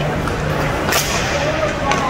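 Hockey stick cracking against the puck on the ice: one sharp crack about a second in and a lighter click near the end, over rink noise and players' shouts.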